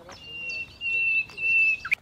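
Small birds chirping in short repeated notes, joined by a loud, steady, high-pitched whistle-like tone held for about a second and a half that swells twice. A sharp click comes near the end.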